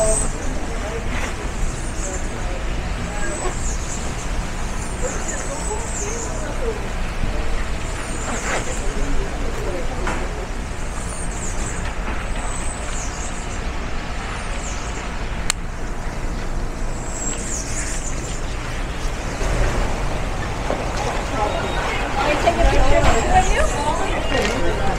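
Outdoor town ambience: a steady low rumble with people's voices, busier near the end, and faint high chirps every second or two.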